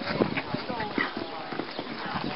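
Indistinct voices in the background with irregular knocks scattered through.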